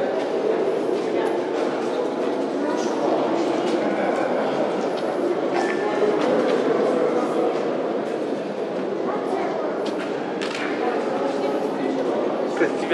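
Indistinct chatter of several people talking over one another, a steady murmur with no single voice standing out, in an underground hall cut into rock.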